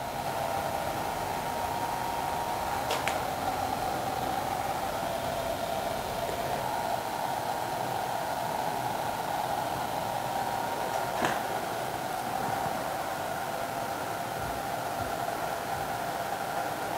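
Steady whir of a cooling fan with a faint steady whine in it, and two faint clicks, one a few seconds in and one past the middle.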